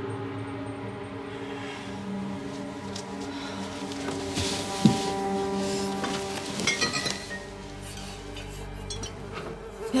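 Flies buzzing steadily. A sharp knock comes about five seconds in, and glass wine bottles clink a few times about seven seconds in as they are handled.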